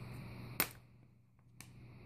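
A nickel being flipped over by hand and set down on paper, giving a single sharp click, then a fainter click about a second later.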